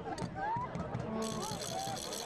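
Soccer stadium ambience: a low crowd murmur with scattered distant shouts and calls from the stands and pitch.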